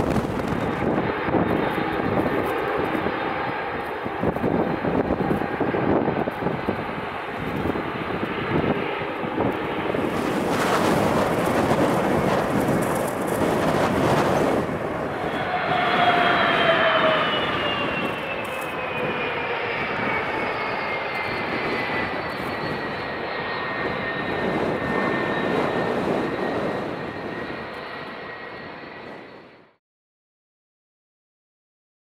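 Twin jet engines of a Boeing 757 airliner running on the runway, a loud steady rush with gusting wind on the microphone. From about halfway through, a high engine whine falls slowly in pitch. The sound fades out near the end.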